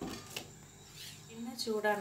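Quiet room tone with a couple of faint clicks in the first half second, then a person's voice begins speaking in the second half.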